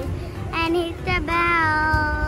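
A child's singing voice over background music, a few short gliding notes and then one long held note.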